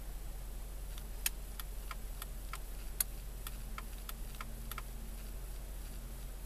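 Dodge Caravan turn-signal flasher ticking steadily at about three clicks a second, starting about a second in and stopping near the end, over the low hum of the idling engine.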